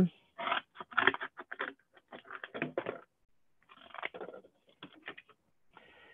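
Scissors cutting a small piece of cardboard: a run of short crunching snips, a brief pause about three seconds in, then more snips. Heard over a video-call connection.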